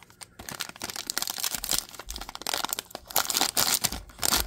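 Foil trading-card pack wrapper of a Prizm football value pack crinkling and tearing as it is handled and ripped open. It is an irregular run of crackles that starts about half a second in and grows louder toward the end.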